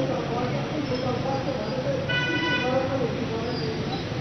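Indistinct voices talking in the background, with one short vehicle-horn honk of under a second about two seconds in.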